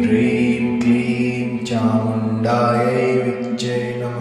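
A Kali mantra chanted in a sung voice over a steady low drone, the syllables changing about once a second.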